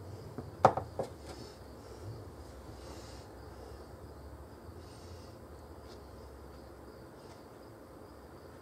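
A sharp click a little under a second in, with a smaller tick just after, from a metal spatula knocking against a metal sheet pan while chocolate frosting is spread. Otherwise a quiet room with a low, steady hum.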